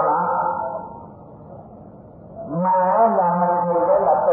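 A voice chanting in long, held tones. It fades to a lull about a second in and comes back strongly after two and a half seconds.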